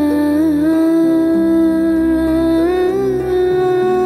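Background music: a voice humming a slow melody in long held notes with small wavering turns, over soft sustained chords that change every second or so.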